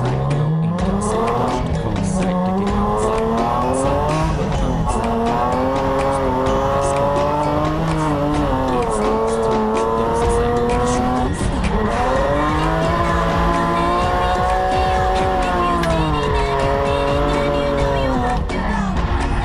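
Drift car's engine at high revs, heard from inside the cockpit, its pitch climbing at the start and then dipping and rising again several times as the car slides, with tyre squeal under it.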